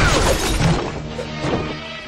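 Cartoon fight sound effects over action music: a loud crash of shattering brick near the start, as a body is slammed into a brick wall, fading under the score.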